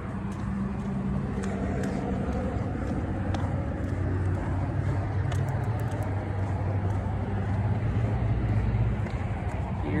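Outdoor background of distant road traffic: a steady low rumble with a faint hum, and a few faint ticks around the middle.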